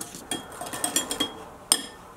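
Wire balloon whisk clinking rapidly against a glass mixing bowl as egg and sugar are beaten, the glass giving a faint ring. Near the end comes one sharper clink.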